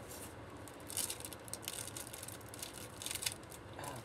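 Plastic packaging and paper crinkling as they are handled, in short irregular bursts of crackle, the loudest about a second in and again around three seconds.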